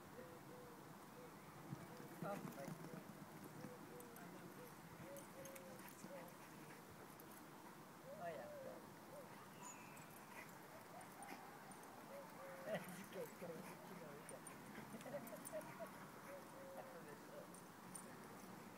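Faint, distant voices over quiet outdoor background noise, with scattered short soft sounds.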